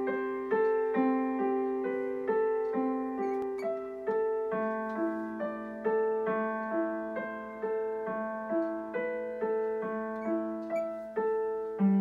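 Digital piano playing a slow, even melody, about two notes a second, over held lower notes.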